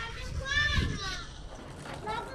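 A young child's high-pitched voice calling out briefly, about half a second in.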